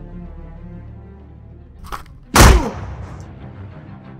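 Background soundtrack music, cut by a single loud dubbed bang about two and a half seconds in that rings off briefly, with a fainter short crack just before it.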